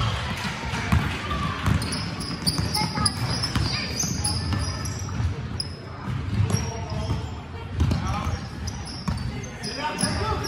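Basketball being dribbled on a hardwood gym floor during play, with repeated bounces, over the overlapping voices of players and spectators echoing in the hall.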